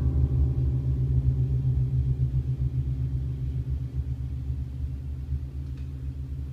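Low bass notes struck on a Yamaha CP-70 electric grand piano and held, a deep drone with a wavering beat that slowly dies away.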